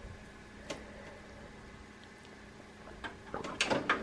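Toshiba TV/VCR combo's tape mechanism working after a button press: a click at the start and another shortly after, a faint steady hum, then a quick run of mechanical clicks and clunks near the end as the tape engages for playback.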